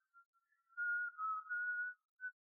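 A person whistling a melody: one clear, pure tone that comes in faint, grows strong, then steps down in pitch and back up. It is heard alone, stripped of any instruments.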